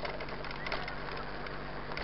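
Mountain bike rolling along a dirt road: steady tyre and riding noise with faint rattles and ticks from the bike.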